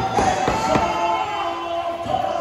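Muay Thai ring music with a wavering, pitched melody. It is cut across by four or so sharp knocks in the first second.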